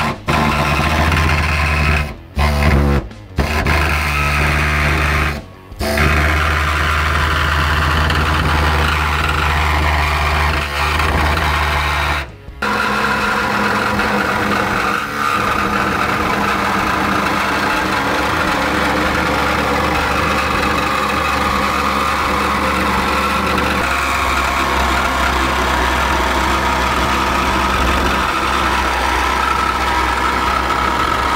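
Handheld air-powered cutting tool, run off a compressed-air hose, cutting the snorkel hole through a 4WD's front guard panel. It stops and starts four times in the first dozen seconds, then runs steadily.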